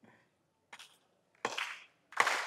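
Mostly quiet, then a single sharp hand clap about one and a half seconds in, with a short ring of hall echo after it; a faint tap comes before it.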